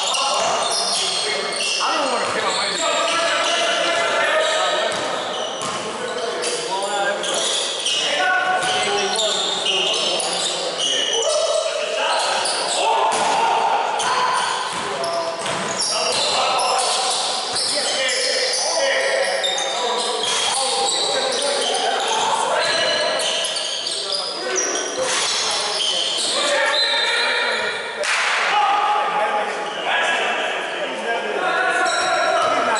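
A basketball bouncing and being dribbled on a gym floor during play, with indistinct voices of players and onlookers calling out throughout, echoing in the gymnasium.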